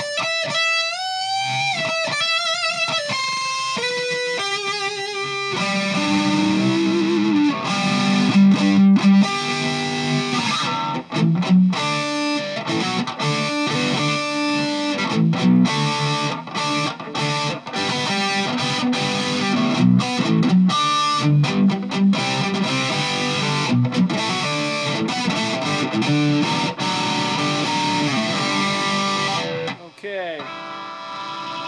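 Electric guitar on the neck pickup through a Boss ME-50 multi-effects pedal's Metal distortion with the variation engaged, a thick, intense distortion. It opens with a few held lead notes with wide vibrato, then from about five seconds in turns to fast distorted riffing broken by many short, abrupt stops.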